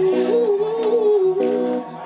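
Live band music: a singer holds one long, wavering note over chords that repeat about every two-thirds of a second, with guitar and bass. The held note stops just before the end.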